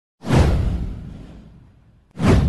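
An intro sound effect: a swoosh with a deep boom beneath it. It starts suddenly just after the beginning, sweeps downward in pitch and fades away over about a second and a half.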